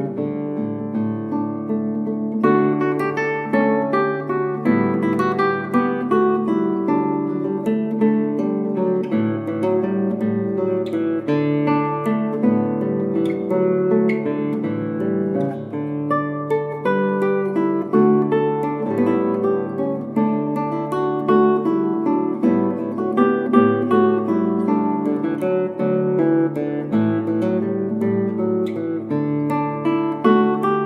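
Solo acoustic guitar playing a composed fingerstyle piece: a steady flow of plucked melody notes over lower bass notes.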